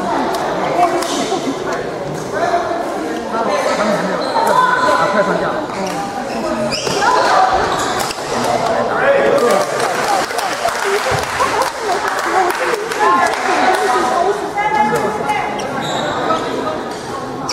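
Many people talking at once in a large hall, with the sharp pops of badminton racquets hitting a shuttlecock scattered through the chatter.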